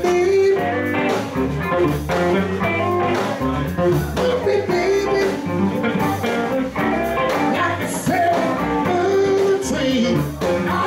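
Live blues band playing a 16-bar blues, with electric guitar over bass and drums.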